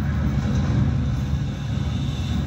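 Low, steady rumble of an ammunition depot blast and fire, swelling slightly about a second in.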